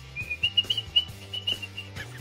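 A person whistling a high, wavering string of short, broken notes, trying to whistle after eating a dry Marie biscuit. Quiet background music with low bass notes runs underneath.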